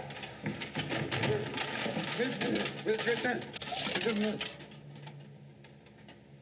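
A man's muffled voice through a gas mask, a few short, cooing-like hoots amid crackling and rustling.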